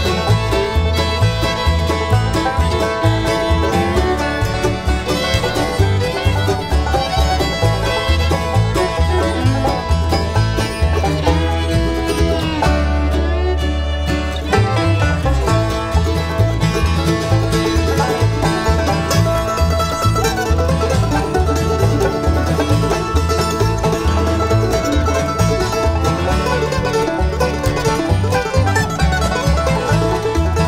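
Acoustic bluegrass band playing an instrumental break with no singing: fiddle leads in the first part and the mandolin takes the solo after a brief held low note about halfway through, over a steel-string flat-top guitar, five-string banjo and upright bass.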